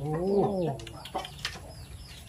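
A man's drawn-out "oh" in speech, followed by a few faint, short, high chirps from a bird.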